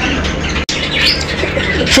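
Birds calling in a pigeon loft: many short chirps over a steady din of bird sound, with a brief dropout about a third of the way in.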